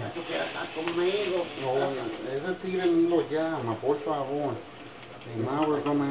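Speech: a voice talking, with a short pause about four and a half seconds in.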